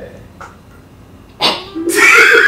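A short, breathy burst of a person's laughter about one and a half seconds in, after a quiet stretch of room tone; a second, sharper burst comes right at the end.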